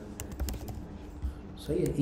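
Typing on a computer keyboard: a quick run of keystroke clicks in the first second, one more click a little later.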